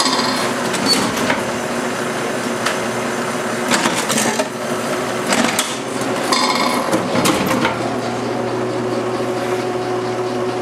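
Bourg AE22 booklet maker (stapler, folder and trimmer) running, with a steady mechanical hum and sharp knocks every second or so as booklets pass into the trimmer.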